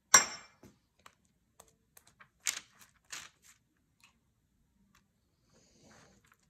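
Pastry brush dabbing egg wash onto braided challah dough and the parchment paper beneath it: a sharp tap right at the start, then a few short, soft brush strokes and small clicks about two and a half and three seconds in.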